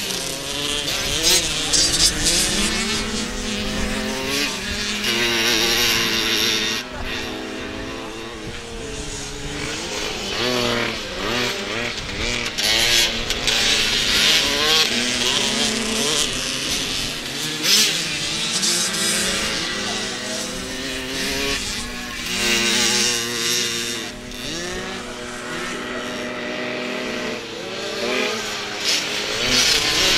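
Several small 65 cc two-stroke youth motocross bikes racing, their engines revving up and falling back over and over, with several overlapping whines rising and falling in pitch as the bikes pass.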